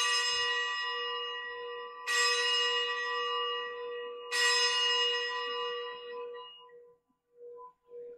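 Altar bell struck three times, about two seconds apart, each strike ringing out and slowly fading: the bell rung at the elevation of the chalice after the consecration.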